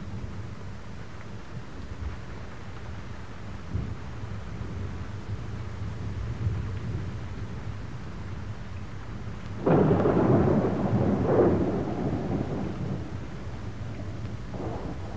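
Thunder over a steady low rumble and hiss of rain. About ten seconds in, a sudden loud thunderclap swells twice and rolls away over about three seconds.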